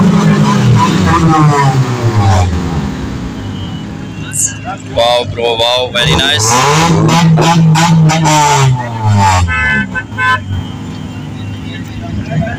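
Car engine revving: its pitch drops back in the first two seconds, then it climbs and falls again in a second rev about halfway through. Voices of a crowd talking are heard throughout.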